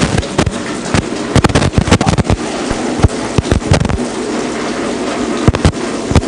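Water glugging out of an inverted bottle into a clear tube, with a fast, irregular run of pops and splashes as air bubbles up through the neck.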